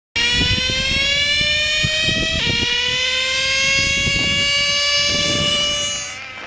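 Small nitro-fuelled glow engine of a radio-controlled car running at high revs with no muffler: a loud, high-pitched buzzing whine. Its pitch climbs steadily, drops abruptly about two and a half seconds in, climbs again, and the sound fades a little near the end.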